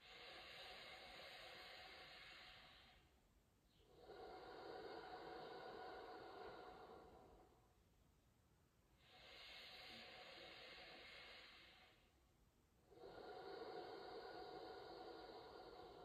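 A man's slow, even, deliberate yoga breathing, faintly heard: four long breath sounds of about three seconds each, with short pauses between.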